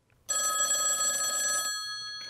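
Telephone bell ringing: one trilling ring of about a second and a half, starting shortly after the beginning, then its tones fading away slowly.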